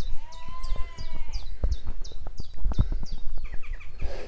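A songbird singing a run of short, high, repeated notes, about three a second, that turn into a quicker, lower trill near the end. A longer call rising and falling in pitch sounds for about a second near the start, over irregular low thuds of walking.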